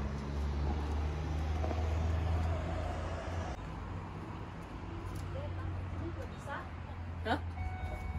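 A motor vehicle engine running steadily, heard as a continuous low hum.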